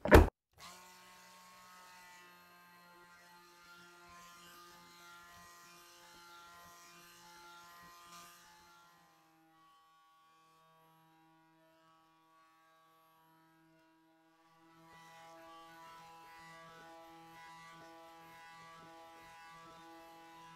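An immersion blender's metal head knocking against a glass measuring cup a few times right at the start. A faint steady hum with a fixed pitch follows, dropping out for about five seconds in the middle.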